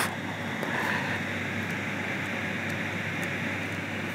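Steady, even background hiss with no speech, like room noise from a fan or air conditioner picked up by the microphone.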